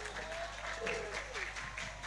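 Audience clapping, a scatter of hand claps with faint voices behind it.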